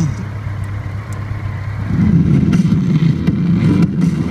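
BMW K1200LT motorcycle's inline-four engine running, growing louder about halfway through.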